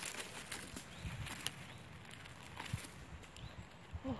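Dry leaves and twigs on the forest floor crackling and rustling under foot and hand, in a few sharp crackles and soft low thumps.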